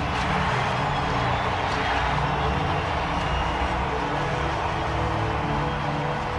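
Stadium crowd cheering steadily under music with sustained low tones.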